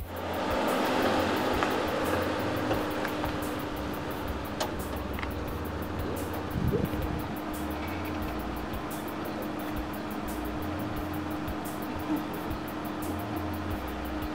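Mercedes-Benz M-Class SUV driving slowly on a dirt road and pulling up, its engine and tyre noise loudest in the first few seconds, then settling to a low steady hum. Soft background music plays throughout.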